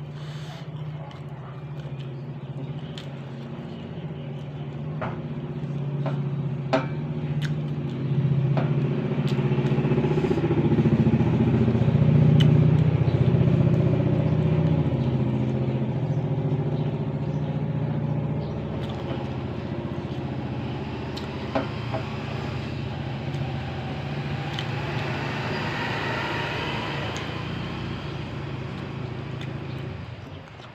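A motor vehicle engine running with a steady low hum. It swells to its loudest about twelve seconds in, then slowly fades. A few sharp clicks fall in the first ten seconds.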